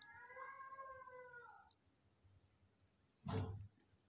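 A cat meowing: one long call of under two seconds, dipping in pitch at its end. A short loud burst of noise follows a little past three seconds in.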